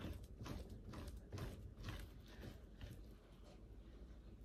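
Spoon scraping raw mackerel flesh off a fillet on a plastic cutting board: faint, short strokes about two a second, trailing off near the end.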